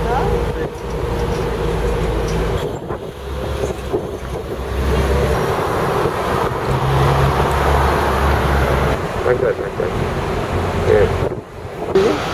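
Wind buffeting the microphone on a moving sightseeing bus, a heavy low rumble and hiss over the bus and street traffic. It breaks off briefly about three seconds in and again near the end.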